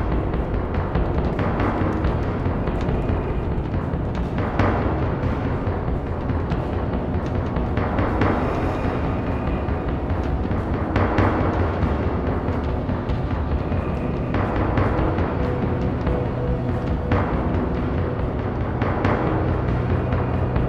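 Live drum ensemble: a drum kit and standing drums playing continuously, with cymbal crashes ringing out every few seconds.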